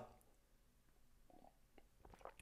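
Near silence: room tone, with one faint swallow from a drink about one and a half seconds in.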